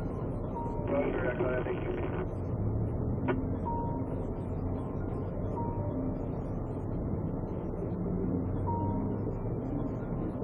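Cabin sound of a stationary police patrol car: a steady low hum with a short, high electronic beep every two to three seconds. A brief burst of radio transmission comes about a second in, and a single click a little after three seconds.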